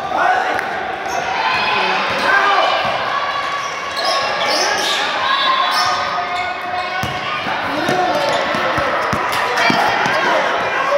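Basketball game in a large gym: the ball bouncing on the court, with sharp thuds mostly in the second half, over overlapping shouts from players and onlookers, all echoing in the hall.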